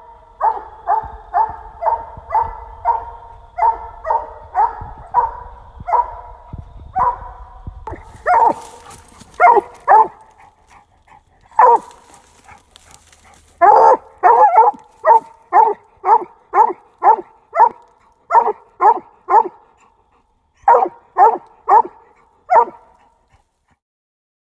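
Coonhound barking treed at a raccoon: a long string of short barks, about two a second, with brief breaks near the middle and again later on. A low rumble sits under the barks in the first few seconds.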